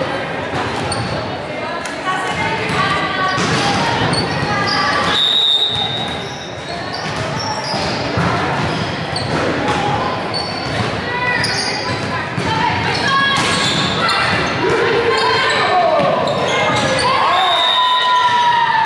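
Indoor volleyball rally in a large, echoing gym: repeated thumps of the ball being struck, voices of players and spectators calling out, and sneakers squeaking on the court floor, with squeaks and shouts growing busier near the end as the point finishes.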